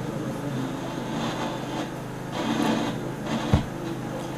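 Steady low hum of background room or sound-system noise, with a single short thump about three and a half seconds in.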